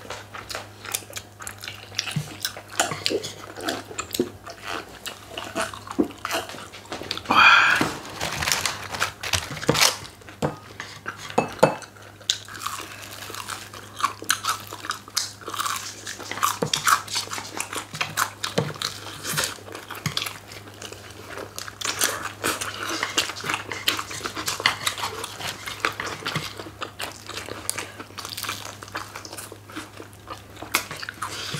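Several people chewing and biting into crispy fried chicken wings with a thin starch batter: frequent crisp crunches and wet mouth sounds. One louder, longer sound stands out about seven seconds in.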